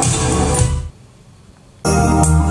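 Recorded music with keyboard playing through JMlab Daline 6 transmission-line hi-fi speakers; it cuts out just under a second in, leaving a short near-gap, then music starts again suddenly shortly before the end, as when a track is skipped on the player.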